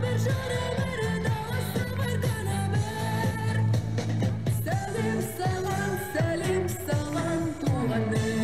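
A young woman singing a lively pop song into a microphone, with instrumental accompaniment and a steady bass line; the sung notes are long and held.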